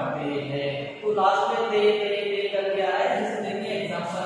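Voices reciting in a sing-song chant, holding long syllables, with a short break about a second in.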